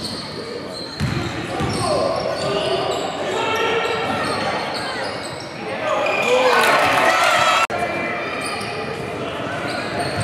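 Live basketball game in an echoing gym: the ball bouncing on the wooden court, sneakers squeaking, and players calling out, loudest in a stretch of shouting about six seconds in. The sound breaks off for an instant near the end where the footage cuts.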